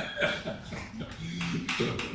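Two men chuckling quietly in short, broken bursts.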